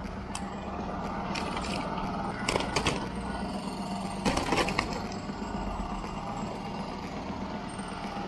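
Portable generator engine running with a steady low hum, with clusters of sharp knocks and rattles about two and a half and four and a half seconds in.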